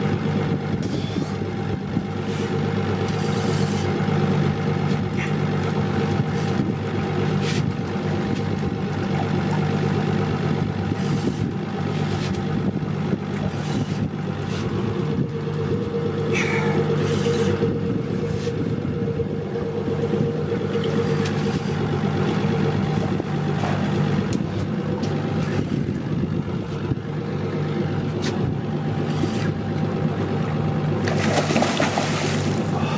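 Outboard motor idling steadily under the boat's hull, with scattered light clicks and knocks on top.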